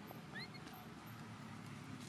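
A faint, brief high call that rises in pitch about half a second in, over a low steady background hum.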